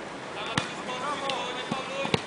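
A football being kicked: one sharp, loud strike about half a second in, then a couple of lighter touches, over players' shouts.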